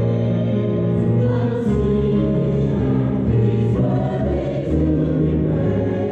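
Church choir singing a gospel anthem, the voices holding sustained chords that change about four seconds in.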